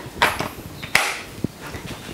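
A battery pack being slid into a Ryobi cordless jigsaw and clicking into place. A few short plastic clicks and knocks, the loudest about a second in.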